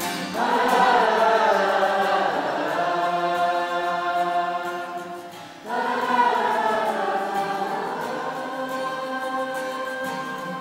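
A group of young musicians holding a long chord together: it comes in just after the start, fades away, and is cued in again loudly a little past halfway, then slowly dies down.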